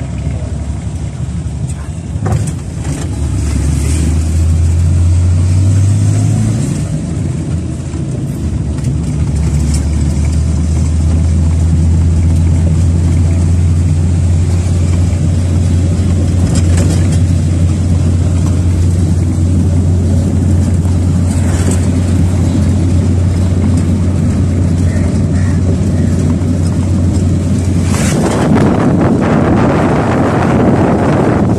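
A vehicle's engine drones steadily, heard from inside the cab while driving. Near the end a loud rush of wind noise comes in.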